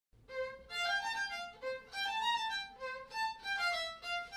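Solo violin, bowed, playing a slow melody one note at a time.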